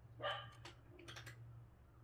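A single short dog bark about a quarter of a second in, followed by a few faint clicks.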